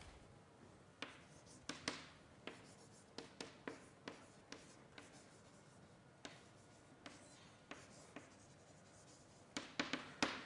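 Faint writing on a board: irregular sharp taps and short scratchy strokes, about one or two a second.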